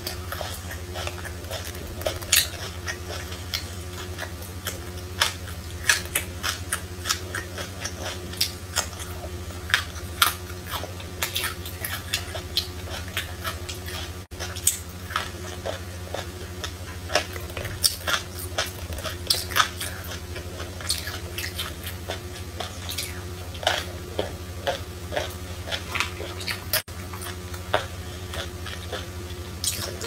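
A person chewing food with many short, wet mouth clicks scattered throughout, over a steady low hum.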